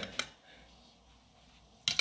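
A metal spoon clicks once against a small saucepan of melted garlic-herb butter. Near quiet follows, with a second short click near the end.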